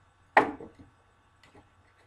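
One sharp knock of a plastic action figure hitting a toy wrestling ring, ringing out briefly, then a faint click about a second later.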